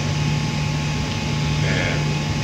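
Steady low hum with an even hiss of background noise: room tone, with no speech.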